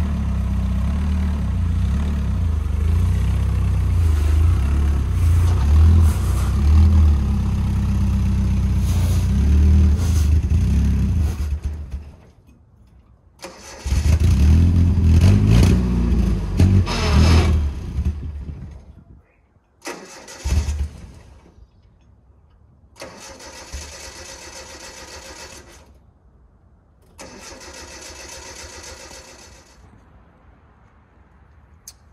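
Carbureted four-cylinder engine of a 1985 Nissan 720 pickup with a Weber 38/38 carburettor, running steadily, then cutting out about twelve seconds in. It picks up again with a rev and dies a few seconds later, followed by two shorter, quieter spells of cranking near the end. The engine dies because the fuel pump relay wiring has come undone, as the owner finds.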